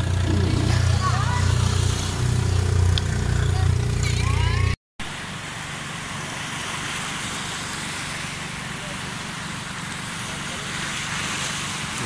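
An engine running steadily at idle with a low drone for about five seconds. The sound then cuts off suddenly and gives way to an even, quieter rushing noise.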